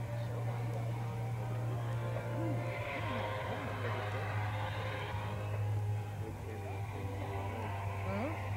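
Background music and scattered voices of people talking, over a steady low hum.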